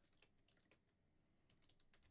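Near silence, with faint computer keyboard keystrokes in two short runs as numbers are typed in.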